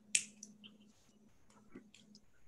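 Clicks at a computer desk: one sharp click just after the start, then a few fainter clicks later on, over a faint steady hum.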